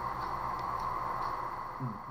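A pause in speech filled with the steady background hum and hiss of a home recording setup, with no distinct event.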